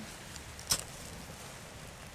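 One short, sharp scrape of a striker along a fire steel (ferrocerium rod) about two-thirds of a second in, with a couple of fainter ticks before it. The strike showers sparks into dry grass and reedmace seed-head tinder and lights it.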